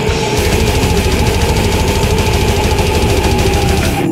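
Death metal band playing: fast, even double-kick bass drumming under a long held guitar note. The full band drops away right at the end.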